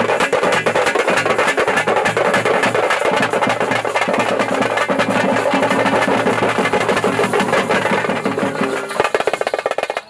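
Live festival drum band playing a fast, dense drum rhythm, with a low pitched instrument holding notes underneath. The playing thins and breaks up near the end.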